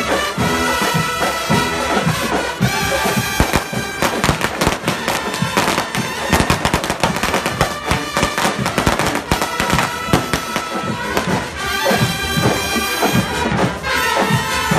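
Marching band playing live: wind instruments hold sustained notes, with dense drum and cymbal hits through the middle.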